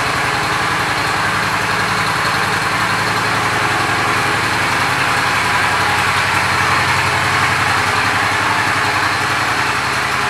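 Honda Shadow Spirit 750 V-twin engine idling steadily through its chrome exhaust, with no revving.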